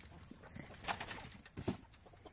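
Faint footsteps on wood-chip litter, with a few soft knocks about a second in and twice more shortly before the end.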